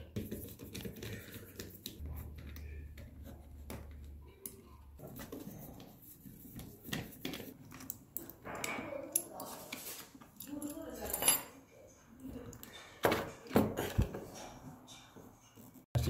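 Irregular light clicks and clinks of small metal parts against a plastic housing, with a few louder knocks in the second half, as screws are taken out and a small 12 V air compressor unit is worked loose and lifted out of its case.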